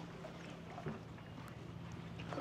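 Faint lakeside ambience: a low steady hum under a soft even hiss, with one small knock a little under a second in.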